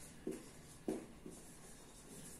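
Marker pen writing on a whiteboard: three short strokes, the loudest about a second in.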